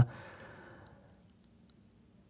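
A man's breathy exhale trailing off after a word, fading over about a second into near silence, with one faint click about halfway through.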